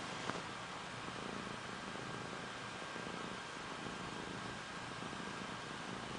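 Seal point ragdoll kitten purring steadily, close to the microphone, with one short click about a third of a second in.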